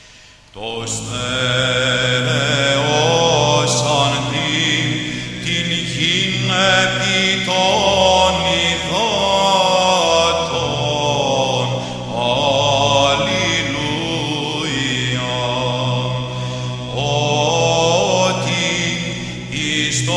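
Orthodox church chant: a solo melodic vocal line moving over a steadily held low drone note. It begins about half a second in.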